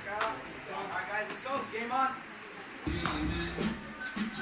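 Men's voices talking, with a single sharp smack just after the start; about three seconds in, background music with a heavy bass beat comes in.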